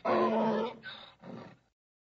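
Donkey braying: a pitched call followed by breathy, higher-pitched gasps, in the back-and-forth of a hee-haw. It cuts off about a second and a half in.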